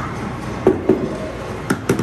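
Arcade mini-bowling ball knocking on the lane: four short knocks in two quick pairs, about a second apart, over the steady hum of arcade machines.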